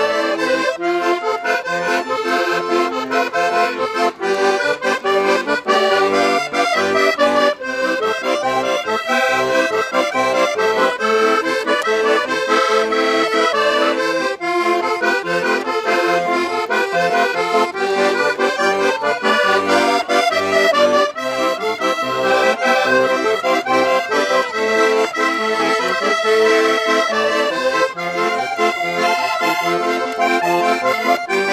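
Two accordions, a Portuguese concertina and a chromatic button accordion, playing together a lively traditional Portuguese dance tune at a steady, quick rhythm.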